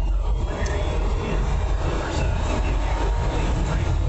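Ford 5.4-litre Triton V8 pulling hard after an automatic-transmission kickdown at about half throttle, revs climbing steadily, heard from inside the cabin along with road noise. The engine is fitted with an aftermarket throttle body spacer.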